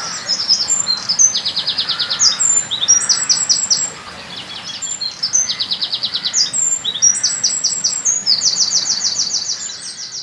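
A songbird singing a loud, continuous run of high, rapid trills and quickly repeated notes, the phrases changing every second or so.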